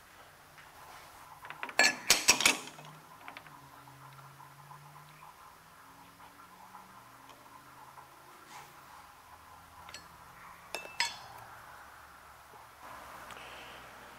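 Metal parts clinking and knocking together as a workpiece is handled at a lathe chuck: a loud cluster of sharp clinks about two seconds in and a shorter one near eleven seconds, with faint low hum between.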